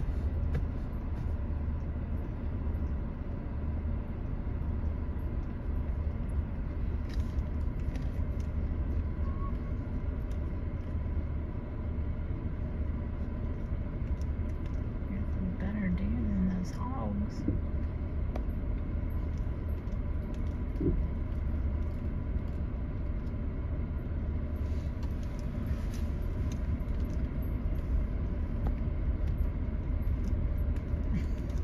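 Vehicle engine running at idle or low speed, a steady low rumble.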